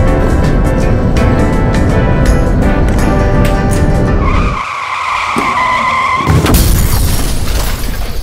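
Background music with a steady beat gives way, about four seconds in, to a tyre-screech sound effect: one held squeal lasting about two seconds. A loud burst of hissing noise follows near the end.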